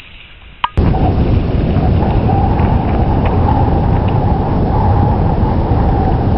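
Strong wind buffeting the camera microphone on an exposed summit: a loud, steady rumbling roar that starts abruptly about a second in.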